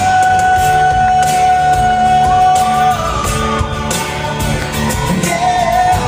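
Live acoustic country band: a male voice holds one long high note for about three seconds, with a second, higher voice coming in around the middle, over strummed acoustic guitars, bass and a steady percussion beat.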